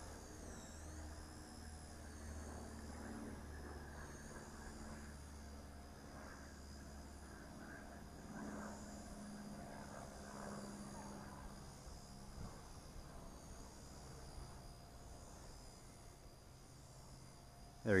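Blade Nano S2 micro RC helicopter in flight, its motors giving a faint high whine whose pitch dips and recovers a couple of times as throttle and rotor speed change. A low wind rumble fades out after about six seconds.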